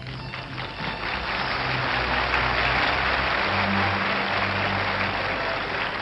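Orchestra music with steady bass notes, under audience applause that swells about half a second in and continues.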